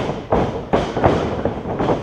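Heavy thuds of wrestling blows and a body on a wrestling ring, several in quick succession.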